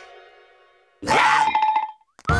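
Cartoon soundtrack sound effects: a held ringing tone fades to almost nothing over the first second. Then a sudden loud blast with a steady high note cuts in and stops abruptly about a second later.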